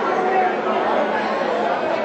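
Chatter of many people talking at once in a school corridor, with no single voice standing out.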